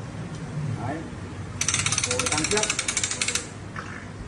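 Ratchet of a calving jack clicking rapidly as its handle is cranked, about a second and a half in and lasting nearly two seconds. The jack is tightening the calving rope on the calf, and the tension prompts the cow to push.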